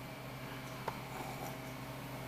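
Quiet room tone with a steady low hum and one faint click about a second in.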